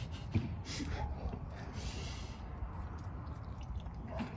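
Two people eating tacos quickly, with short hissy breaths and snorts through the nose as they chew, over a low, steady background rumble.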